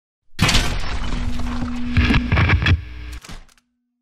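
Sound effects for an animated channel logo: a loud burst of crackling, crashing noise over a steady low hum, lasting about three seconds and stopping abruptly, then a short fading tone.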